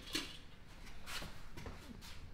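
Mostly quiet, with two faint, brief soft rustles about a second apart.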